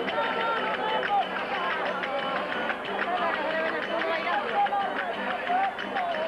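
Verdiales folk band (panda) playing live: fiddle and strummed guitars under a wavering melody line, with large tambourines and small cymbals struck in a dense, steady rhythm.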